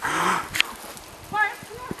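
People's voices outdoors: the tail of a laughing remark, a sharp click, then a short high-pitched cry about a second and a half in.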